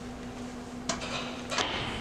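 Two faint metallic clinks from counterweight-system rigging hardware, about a second in and again near the end, as the fiber-rope purchase line is pulled slack and the tension block shifts in its guide.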